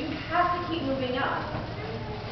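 A woman speaking, picked up in a reverberant hall.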